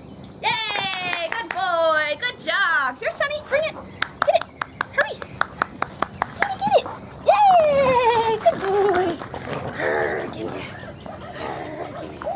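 High-pitched excited vocal calls without words, several of them sliding up and down in pitch, with a quick run of sharp clicks in the middle. A steady insect buzz runs underneath.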